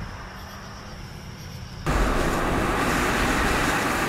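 Steady road and engine noise heard from inside a moving car. It is fairly low at first, then jumps abruptly louder a little under two seconds in and holds steady.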